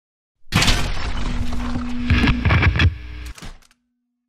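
Logo intro sound effect: a sudden burst of crashing, noisy sound with low thumps and a steady hum underneath. It breaks off with a few clicks about three and a half seconds in, leaving the hum to fade out faintly.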